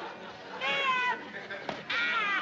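A woman's high, wavering comic cry of pain, about half a second long, with a second cry starting near the end. A single sharp knock just before it.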